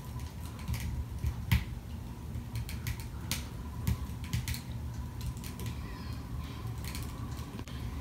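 Wood fire crackling in a wood-burning stove: irregular sharp pops and snaps, a few every second, over a low steady rumble.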